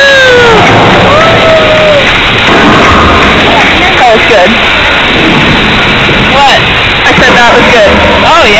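Big Thunder Mountain Railroad mine-train roller coaster running along its track: a loud, steady rushing rumble with wind on the microphone. Riders' voices call out over it, with one long falling cry at the start and shorter calls about halfway and near the end.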